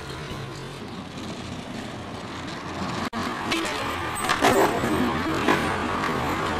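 Skateboard wheels rolling over asphalt, a steady rough rumble, with a few sharp clacks from the board in the second half.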